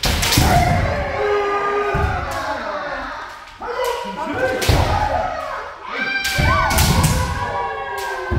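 Kendo practitioners' drawn-out kiai shouts overlapping from several voices, with sharp cracks of bamboo shinai striking armour and heavy thuds of stamping feet on the wooden dojo floor, every second or two. The hall gives it all an echo.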